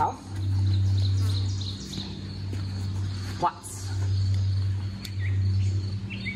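Outdoor backyard ambience: a low, steady rumble that swells and fades, with faint bird chirps above it. A single short click comes a little past halfway.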